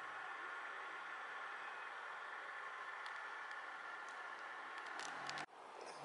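Steady faint hiss of background noise with no distinct event, dropping away suddenly about five and a half seconds in.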